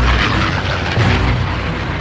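Battle sound effects of deep explosion booms with music running underneath, swelling again about halfway through.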